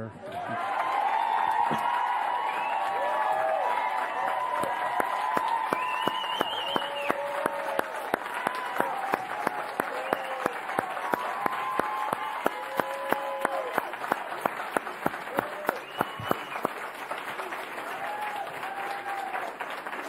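Crowd applauding and cheering, with whoops and shouts over the clapping. Past the halfway point the clapping settles into a steady rhythm of about three claps a second.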